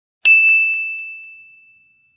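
A single bright ding sound effect struck once about a quarter second in: one high, clear bell-like tone that rings out and fades away over about a second and a half.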